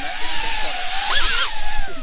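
Small ducted quadcopter (cinewhoop) flying close by: its brushless motors and propellers give a high whine that wavers in pitch with the throttle, surging and rising briefly a little past a second in.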